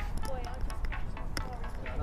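Faint talking over a low, steady rumble.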